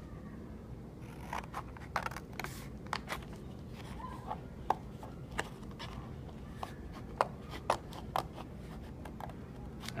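Scissors snipping through a sheet of painted paper in short cuts, one sharp snip every second or so at an uneven pace, as the paper is turned between cuts.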